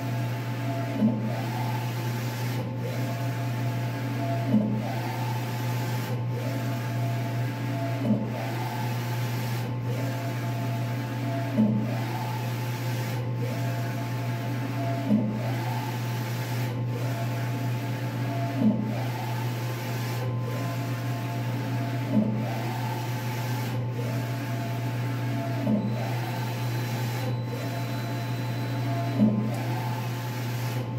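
Large-format inkjet printer with an XP600 printhead printing uni-directionally: the carriage motor whines through each pass in a regular cycle about every three and a half seconds, with a short louder tick at the same point in every cycle, over a steady low hum.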